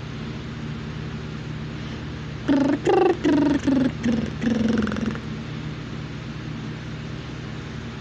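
Unaccompanied voice singing five short syllables a little past two seconds in, the last one held longer, over a steady low hum.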